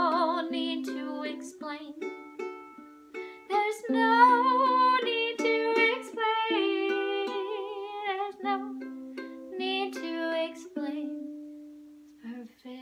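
Bruce Wei soprano ukulele being strummed and picked, with a woman singing long wavering held notes at the start, in the middle and again near 10 s. Near the end the playing settles on a single note that rings and fades.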